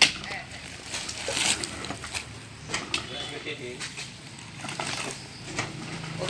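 A long spiked pole stabbing into a fresh oil-palm fruit bunch, a sharp thud right at the start, followed by a few lighter knocks as the bunch is worked.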